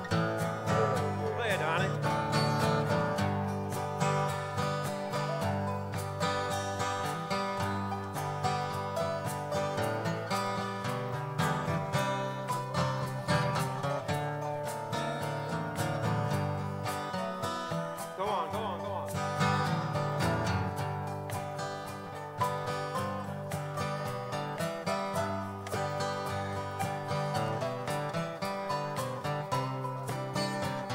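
Acoustic guitars playing the instrumental break of a country song, a steady rhythm underneath with a melody line over it that wavers in pitch about a second in and again a little past halfway.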